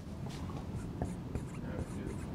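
Pen writing on a board: faint scratching strokes and light taps as the letters are drawn.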